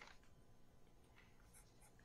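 Near silence with a few faint strokes of a felt-tip marker on paper.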